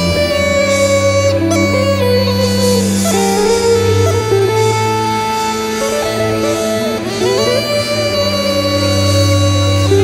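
Bulgarian gaida (bagpipe) playing a melody over its steady drone. The melody steps and slides between notes, with upward glides about three seconds in and again a little after seven seconds.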